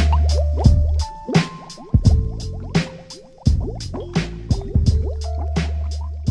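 Instrumental stretch of a 1990s underground hip-hop track, with no rapping: a steady drum beat over a deep bass line, with many short falling blips in between.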